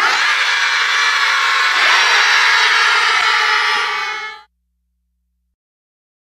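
A crowd of children cheering and shouting together, loud and continuous, cutting off abruptly about four and a half seconds in.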